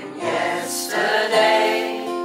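Male voice singing a slow ballad live into a microphone, with acoustic guitar accompaniment.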